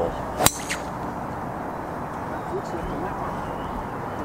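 A golf club striking a teed-up golf ball on a tee shot: one sharp crack about half a second in, over steady outdoor background noise.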